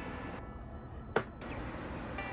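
Quiet room tone with a single sharp click just over a second in.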